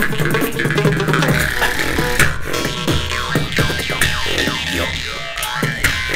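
Two jaw harps (vargans) droning on a steady low note, their overtones sweeping up and down in twangy glides, over live beatboxing that lays down a drum rhythm of sharp mouth kicks, snares and clicks.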